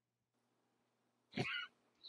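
Near silence, broken about one and a half seconds in by a single brief, high-pitched vocal sound lasting under half a second.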